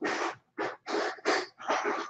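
Rapid breathy panting: short huffs about three a second, with no voice in them.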